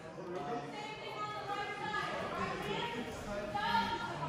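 Faint talking in the background, softer than close speech, with no stick strikes heard.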